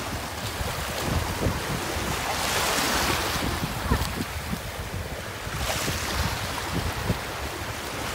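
Shallow ocean surf washing in and out, swelling twice into a louder hissing wash, with wind rumbling on the microphone.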